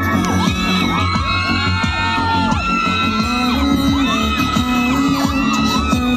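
Music playing over a sound system with a steady low beat, under a crowd cheering and whooping, with many high shouts rising and falling throughout.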